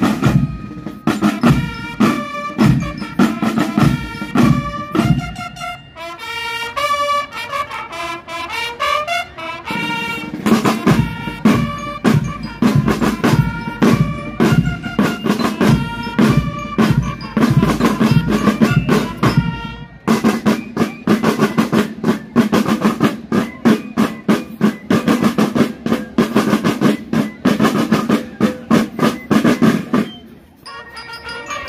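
A fire brigade's marching band (banda de guerra) playing a march: massed snare drums beat a driving rhythm under a melody of wind instruments. Around six seconds in the drumming thins out for a few seconds while a higher melody carries on, then the full drum line comes back in.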